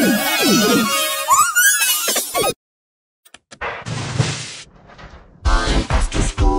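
Music and voice distorted by editing effects, with pitch swooping rapidly up and down, cut off abruptly about two and a half seconds in. After about a second of silence and a few clicks comes a rough noisy stretch, and loud music starts again near the end.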